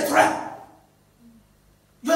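A man's voice through a microphone: a loud drawn-out word that fades out over the first half second or so, followed by a pause of about a second and a half before his voice comes back at the end.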